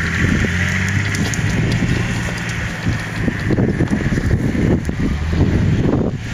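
An off-road SUV's engine running steadily as it drives away over rough ground, fading under heavy wind buffeting on the microphone in the second half.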